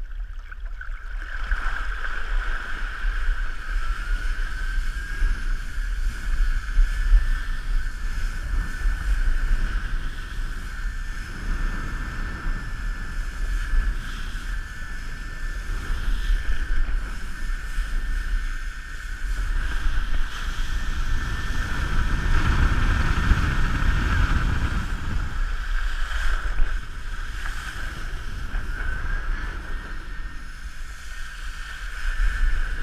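Wakeboard being pulled across lake water by a cable tow: wind buffets the camera's microphone and water rushes under the board, over a steady high whine that wavers slightly in pitch. The rushing grows louder for a few seconds about three-quarters of the way through.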